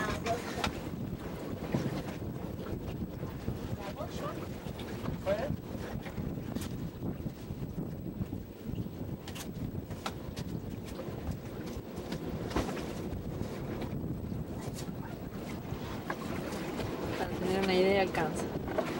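Steady rumble of a boat under way, with wind buffeting the camcorder microphone.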